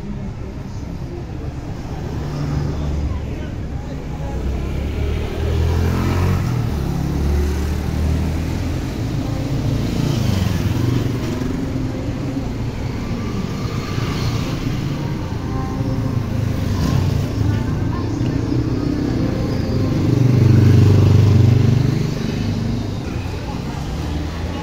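Street traffic: small motorcycles and cars running past, the engine sound rising and falling as each goes by, loudest about twenty seconds in as one passes close. Voices are heard in the background.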